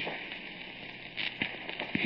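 Surface noise of a badly scratched old transcription record: a steady hiss with scattered clicks and crackles.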